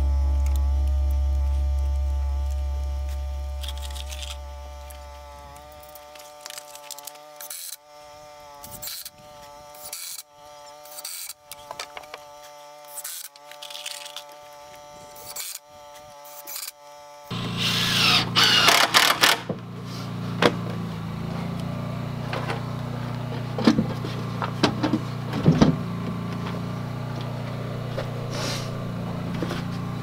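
Background music of sustained chords, its bass fading out over the first few seconds, runs for a little over half the time, then cuts off suddenly to live work sound. A cordless drill driver is heard working on a wooden window frame, with a burst of drilling just after the cut followed by scattered knocks and clicks over a steady low hum.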